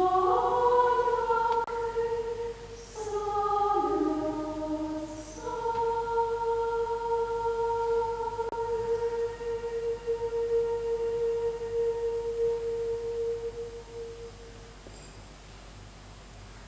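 Large mixed choir singing a few short chordal phrases, then holding one long sustained chord that dies away about fourteen seconds in, ending the piece.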